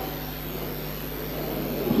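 Steady background hiss with a faint low hum, as the echo of a shouted word dies away at the start.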